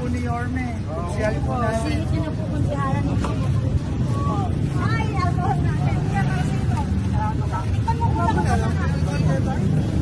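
People talking over a steady low rumble of engines and street traffic from a line of motorcycle tricycles.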